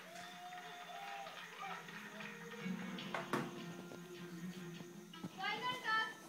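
Television show background music: held tones with one sharp hit about three seconds in, then a voice near the end, heard through a TV speaker.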